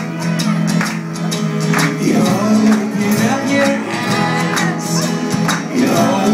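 Indie folk band playing live, with strummed acoustic guitars over cello and percussion.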